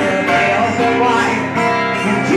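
Live band music played acoustic style, led by a strummed acoustic guitar.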